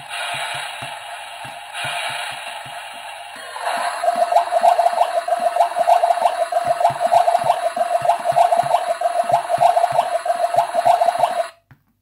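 Battery-operated toy kitchen playing its electronic tune: a hiss over a steady beat, then, about three and a half seconds in, a bright tinny melody with rapid pulsing notes. It cuts off suddenly near the end.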